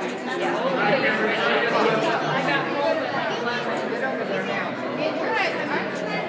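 Crowd chatter: many people talking over one another in a large indoor hall, with no single voice standing out.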